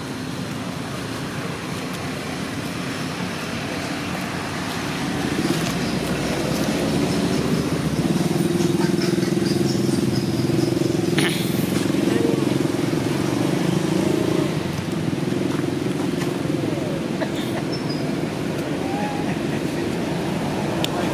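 A motor vehicle's engine hums steadily. It grows louder about five seconds in and eases off after about fourteen seconds, as if passing by, over general outdoor background noise.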